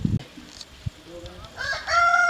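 A rooster crowing, starting about one and a half seconds in and still going at the end.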